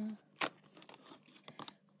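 Cardboard door of an advent calendar being pushed in and torn open: a sharp snap about half a second in, then light crinkling and clicks.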